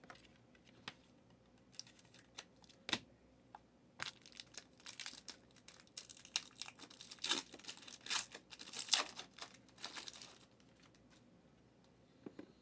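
Trading cards and their plastic packaging being handled and torn open, crinkling. It starts as scattered light clicks and rustles and turns into a denser stretch of crinkling through the middle, which stops a second or two before the end.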